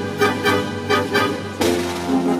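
Concert band of brass and woodwinds playing repeated accented chords, about three a second, moving into a new held chord about one and a half seconds in.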